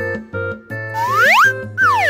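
A playful children's-style background tune with a cartoon sound effect over it: a whistle-like pitch glide that rises from about a second in, followed by a falling glide near the end.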